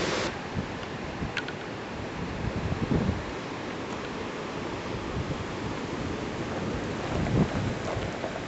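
Steady rush of wind on the camcorder microphone mixed with ocean surf breaking on the rocks below, with low gusty buffets about three seconds in and again near the end.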